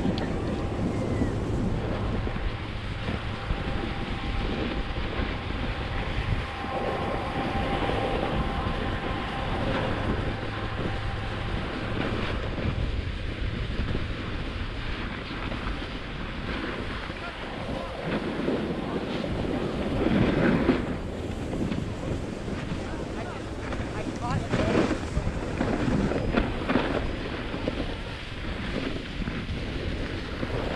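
A snowboard sliding and scraping over packed snow, with wind rushing across the camera's microphone. The scraping swells in a few louder bursts, about twenty seconds in and again several seconds later, as the board turns on its edges.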